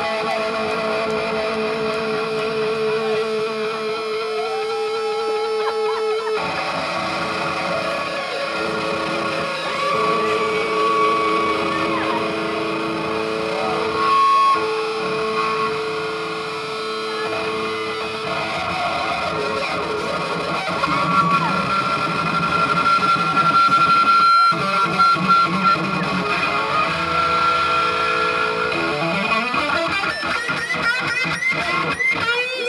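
Live band music: an overdriven electric guitar plays a lead of long held notes with bends and vibrato over the band. The low end of the band fills in about six seconds in.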